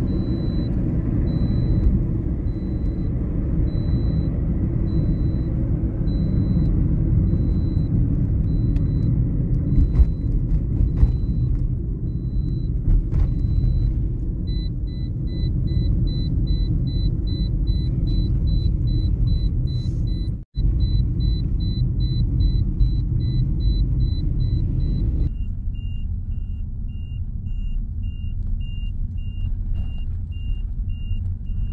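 Steady engine and road rumble of a moving vehicle heard from inside it. A faint high electronic beep repeats in short pips throughout; the pips come faster about halfway through and drop to a lower pitch near the end.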